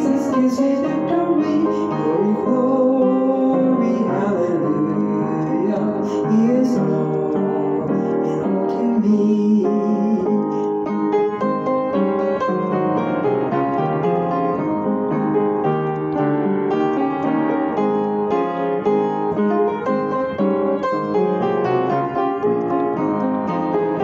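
Piano-voiced keyboard playing a gospel hymn, with a woman's voice singing along over it for roughly the first ten seconds; after that the keyboard plays on its own in an instrumental interlude.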